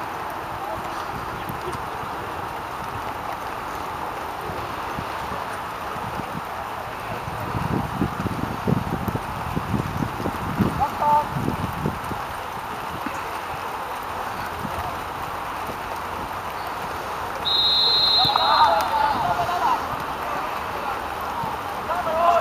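A referee's whistle, one short blast of a little under a second about two-thirds of the way through, followed by young players shouting, over a steady rushing background with low rumbling buffets a third of the way in.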